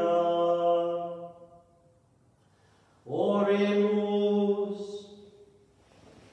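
A man's voice chanting unaccompanied, holding two long steady notes with a pause between them, in a reverberant church.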